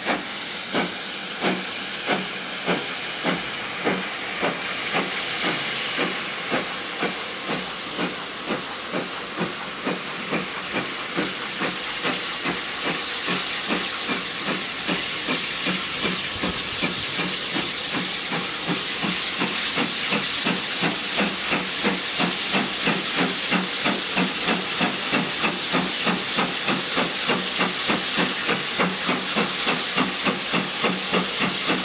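GWR Modified Hall 4-6-0 No. 6989 'Wightwick Hall' steam locomotive pulling away with a train: sharp, even exhaust beats over a steady hiss of steam. The beats quicken from about one and a half a second to nearly three a second as it gathers speed, and grow louder toward the end.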